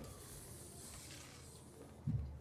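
Faint hiss of a metal slinky's coils sliding and scraping over a tile floor as a side-to-side wave runs along it, dying away gradually.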